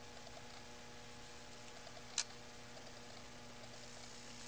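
Faint steady electrical hum with a single sharp click about halfway through, as a variac feeding a high-voltage X-ray transformer is switched on at low voltage.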